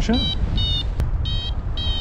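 A paragliding variometer beeping in short high-pitched pips, about two a second, the tone a flight vario gives while the glider is climbing in lift. Under the beeps, wind rumbles on the microphone.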